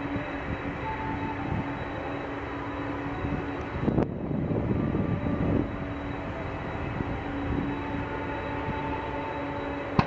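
Boeing 767 jet engines running, a steady rushing noise with a constant whine. A click about four seconds in is followed by a louder surge lasting under two seconds.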